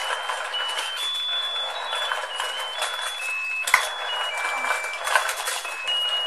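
Battery-powered musical octopus fishing game running: a thin electronic beeping tune steps from note to note over the steady whirr and plastic rattle of its motor-driven turntable, with a sharp click about two-thirds of the way through.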